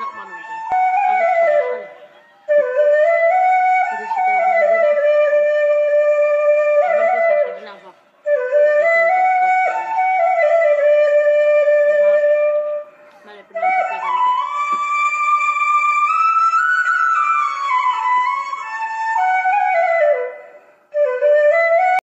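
Background music: a flute plays a slow melody in long phrases of held and gliding notes, with short pauses between the phrases.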